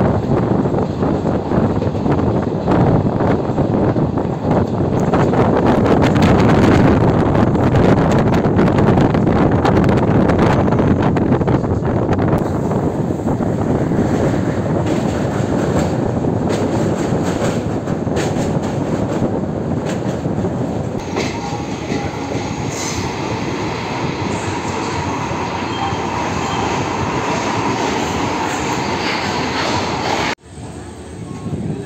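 Running noise of an express train's passenger coach heard from its open doorway: a steady rush of wheels on rails and air, with rapid clattering clicks over the track in the first part. The sound changes about a third of the way through to a thinner, hissier run with a faint high whine from the wheels.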